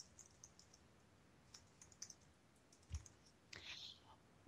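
Near silence with faint scattered clicks, a soft low thump about three seconds in, and a short breath near the end.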